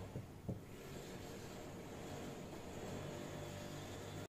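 Faint, steady background hiss and low hum with a couple of soft taps in the first half-second.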